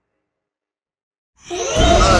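Dead silence, then about a second and a half in a sudden loud swell of horror-film score comes in, heavy in the low end.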